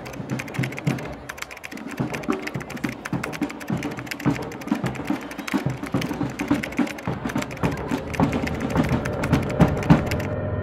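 Typewriter keys clacking in a rapid, irregular run of key strikes, over a faint low steady hum.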